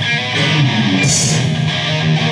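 A live rock band playing an instrumental passage between vocal lines: an electric guitar riff over drums, with a bright cymbal-like splash about a second in.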